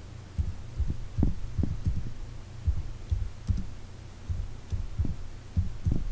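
Keys being typed on a computer keyboard, heard as irregular dull thumps a few times a second over a steady low hum.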